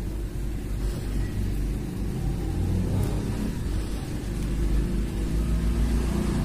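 A low rumble with a steady hum under it, swelling a little around the middle and again near the end.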